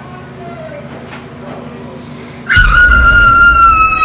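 A child's loud, long frightened scream starts suddenly about two and a half seconds in. It is held on one pitch and sinks slightly, with a deep rumble under it.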